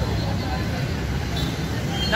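Busy street ambience: a steady low rumble of traffic with people's voices in the background.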